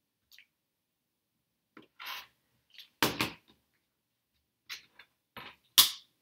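Rotary cutter and acrylic quilting ruler handled on a cutting mat while trimming a paper-pieced block: a scatter of short scrapes and knocks, the loudest about three seconds in and another just before the end.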